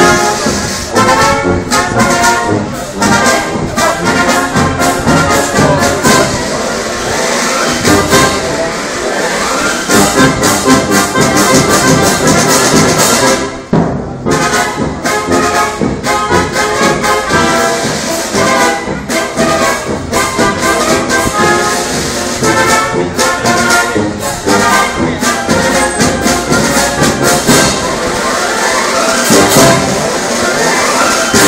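A marching brass band playing a march, with sousaphones carrying the bass under higher brass and sharp drum strokes. The music drops out briefly a little before halfway, then carries on.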